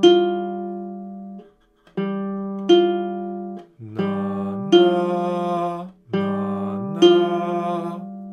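Classical guitar playing a rising minor seventh, G then F, four times, each pair of plucked notes left to ring. On the last two pairs a man's voice sings the notes along with the guitar, sliding up to the higher note.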